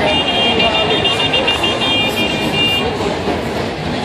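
High electronic beeping, a chord of several steady tones pulsing on and off in a rapid repeating pattern for about three seconds, then stopping. It sounds over constant street noise and crowd chatter.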